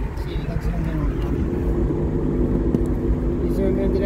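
Car cabin noise while driving: a low road and engine rumble with a steady engine hum.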